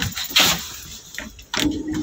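Handling and rustling noise from a phone being carried and moved, loudest about half a second in, with a brief steady tone near the end.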